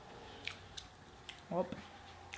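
Faint chewing of fried chicken with a few small, sharp clicks, and a short spoken "oh" about one and a half seconds in.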